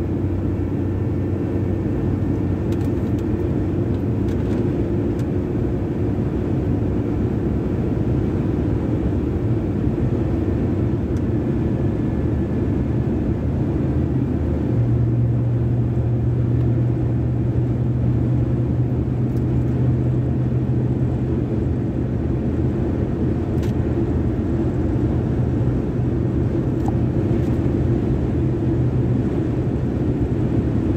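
Steady road and engine noise heard from inside a truck's cab at highway speed. A low engine hum grows stronger about halfway through and holds steady.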